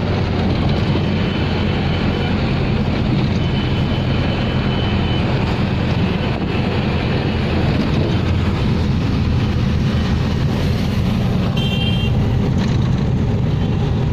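Taxi engine running steadily with road and wind noise, heard from inside the moving cab. Faint short high tones sound over it early on, and again about twelve seconds in.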